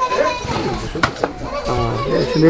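Several voices of adults and children talking over one another, with a single sharp click about halfway through.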